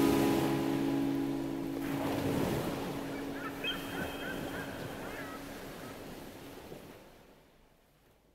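The outro of a recorded alternative-rock song fading out. A held chord dies away in the first couple of seconds, leaving a hissing wash of noise with a few faint wavering high squiggles in the middle. It all fades to silence about seven seconds in.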